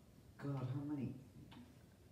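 A person's voice: one short, level-pitched utterance not picked up as words, then a single soft click.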